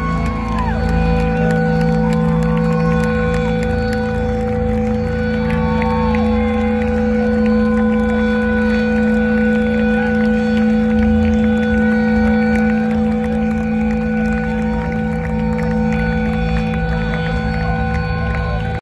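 Live rock band's amplified sound through a large outdoor stage PA: a long droning chord held steady, with a few short wavering higher notes over it.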